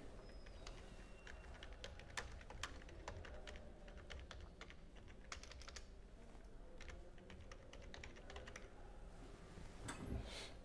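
Faint typing on a computer keyboard: a run of irregular key clicks, coming in small flurries.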